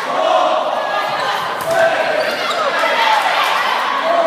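Volleyball rally on a gym floor: ball strikes and players' shoes squeaking on the hardwood, under voices from players and spectators echoing in the gymnasium.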